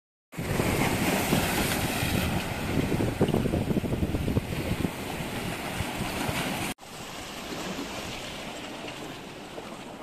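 Wind buffeting the microphone over sea waves washing against a rocky shore. About two-thirds of the way through it cuts sharply to a quieter, steady wash of surf.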